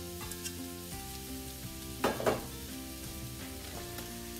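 Sliced onions sizzling steadily in hot oil in a stainless skillet, with a short louder clatter about halfway as the last of the onion goes in. Soft background music with held notes plays underneath.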